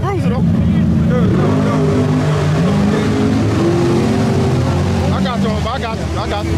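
Drag-racing car's engine running close by, loud and steady, its revs climbing slowly over a few seconds and then holding.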